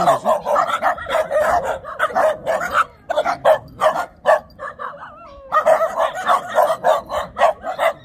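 A pack of small rural dogs barking together at close range, many rapid, overlapping barks. The barking thins out briefly near the middle, then comes back dense.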